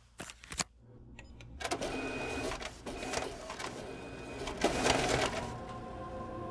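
Office photocopier running through copies, a mechanical rattle with a short high whine coming back about once a second. A couple of sharp clicks come just before it, within the first second.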